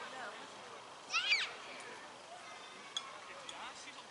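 A short, high-pitched shout about a second in, the loudest sound, over faint distant voices calling on an open rugby pitch.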